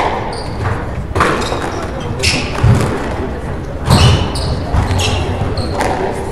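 Squash rally: a series of sharp knocks as the ball is struck by rackets and rebounds off the court walls, with footwork and short shoe squeaks on the wooden floor, echoing in a large hall.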